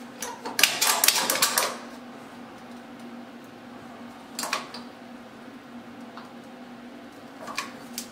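Hand caulking gun clicking as its trigger is worked to push caulk into a shower corner seam: a quick run of clicks about a second in, a couple more around four and a half seconds, and one near the end.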